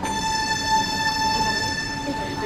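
A sustained high-pitched horn-like tone with many overtones, starting suddenly and held steady.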